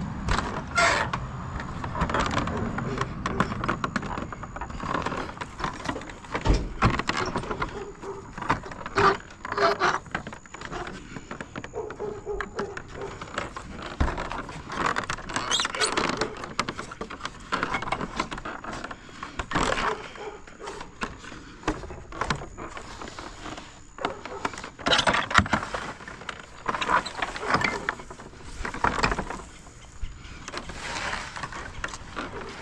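A weathered wooden fence gate rattling and knocking as it is worked open by hand, with repeated sharp clicks and clinks of its metal latch.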